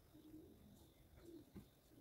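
Near silence, with a few faint, low cooing notes in the background, once early on and again just past the middle.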